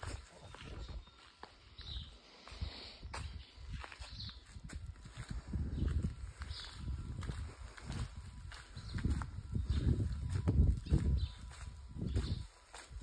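Footsteps of a person walking on a paved road, with low thuds coming roughly twice a second from about halfway in, mixed with rumble from a handheld phone microphone.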